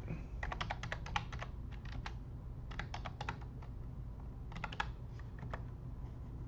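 Computer keyboard typing: three quick runs of keystrokes, each about a second long, as numbers are entered into a spreadsheet.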